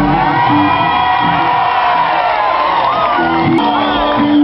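Live rock band's music breaking off at the end of a song, with a loud audience cheering, whooping and shouting over the last held notes.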